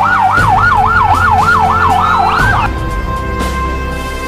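Police siren in a fast yelp, its pitch swinging up and down about three times a second over background music. It cuts off a little past halfway.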